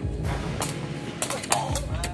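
Sharp knocks of a sepak takraw ball being kicked, about five in under two seconds, the loudest about one and a half seconds in, over a low steady hum. A brief rising squeak comes near the end.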